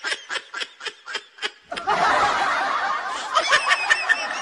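Laugh-track sound effect: a single voice snickering in quick short pulses, about four a second, then about halfway through a group of people laughing together.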